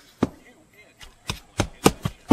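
Claw hammer driving roofing nails through asphalt shingles: about five sharp strikes, coming quicker in the second half.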